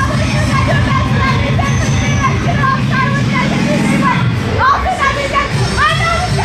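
Many voices chattering at once over background music, whose low band fades out about four seconds in. A few voices rise sharply near the end.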